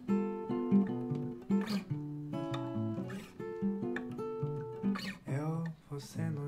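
Acoustic guitar played fingerstyle in a bossa nova rhythm: plucked chords moving over a bass line, with no voice.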